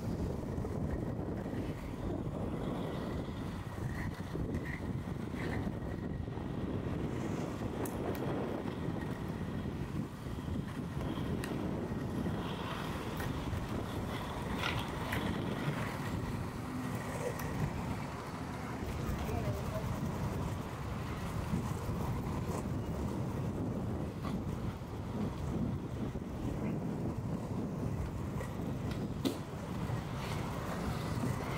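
Inline skate wheels rolling over rough street asphalt in a steady rumble, with wind on the microphone.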